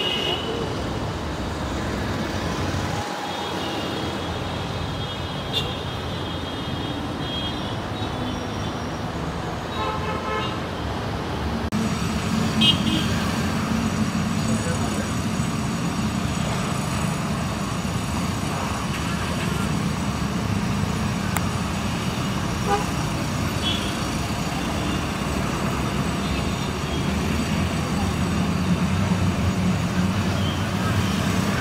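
Street ambience of traffic noise with car horns tooting now and then, over the voices of a crowd.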